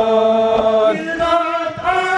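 Male voices chanting a Kashmiri noha, a Shia elegy for Muharram. The voices hold one long note, then move to a lower note about a second in. Soft rhythmic thumps of chest-beating (matam) run beneath the chant.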